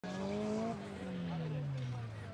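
Honda drag car engine held at high revs. A first rev holds steady, rising slightly, then breaks off, and a second rev follows whose pitch slides steadily down as the revs fall.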